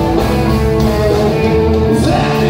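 A live rock band playing, electric guitars over bass and drums, heard through the hall's loudspeakers.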